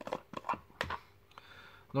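Plastic screw-top lid being twisted off a clear plastic bait jar: a quick run of light clicks in the first second, then quieter.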